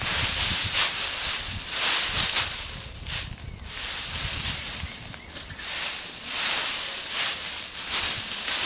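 Dry leaves and straw rustling and crunching as a garden fork digs into and turns a compost pile. The sound comes in several swells with short lulls between forkfuls.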